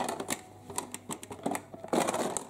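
Clear plastic toy doctor's case being closed and handled, with its plastic toy tools shifting inside: a run of sharp plastic clicks and rattles.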